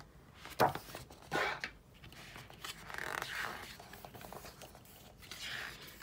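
Pages of a glossy paper photobook being handled and turned: a few sharp paper flaps and rustles, with a longer scraping rustle about three seconds in.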